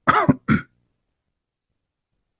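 A man clears his throat twice in quick succession at the very start.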